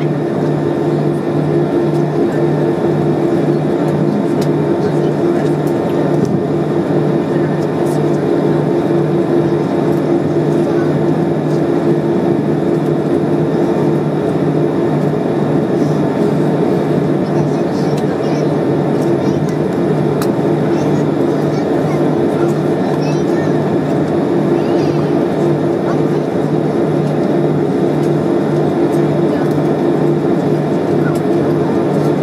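Airliner cabin noise as the aircraft taxis slowly to the gate with its engines near idle: a steady, even drone with a low hum.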